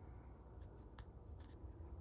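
Near silence with a few faint clicks and light rubbing as fingers handle and feel a small metal test piece.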